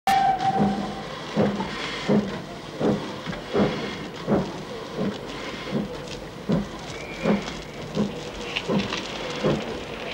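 Railway station ambience beside a standing steam locomotive: a steady hiss of steam with a regular thump about every three-quarters of a second. A brief steady tone sounds at the very start.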